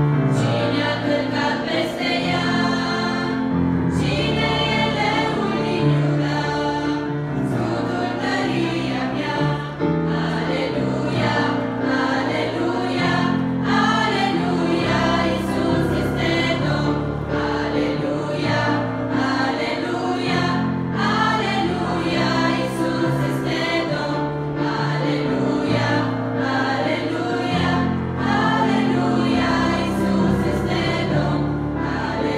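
A church choir singing a hymn, mostly young women's voices, with an instrumental ensemble accompanying under a steady, moving bass line.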